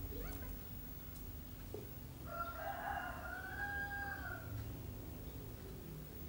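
A single drawn-out animal call, lasting about two and a half seconds and starting about two seconds in. It holds a steady pitch and then drops away at the end.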